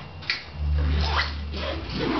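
Nylon backpack rustling and rubbing as gear is pushed into it and the pack is handled, with a short click near the start and a low rumble through the middle.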